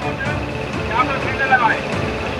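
Background chatter of a crowd, with voices rising about a second in, over a steady low rumbling noise.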